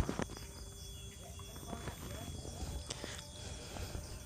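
Quiet handling noises: one sharp knock right at the start, then scattered faint clicks and taps, over a faint steady high chirring of insects.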